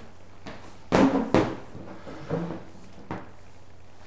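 Knocks and thuds of a handheld whiteboard being handled and set back in place: two sharp knocks about a second in, then a softer knock and a click.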